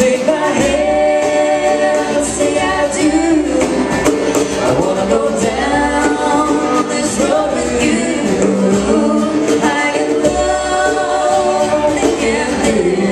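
Live band playing a song on acoustic guitars, with sung vocals in harmony.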